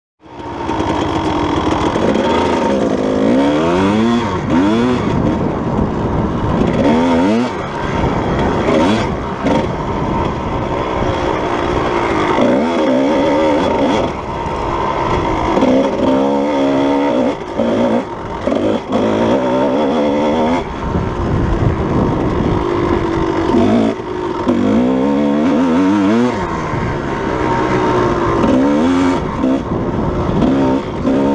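Kawasaki KDX220's two-stroke single-cylinder engine running under load as the dirt bike is ridden along a trail, its pitch rising and falling again and again with the throttle, heard close from on the bike.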